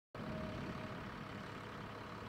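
City transit bus idling: a steady low engine rumble.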